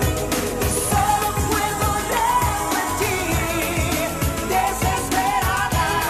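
A woman singing a pop song live over backing music with a steady dance beat, about two kick-drum hits a second.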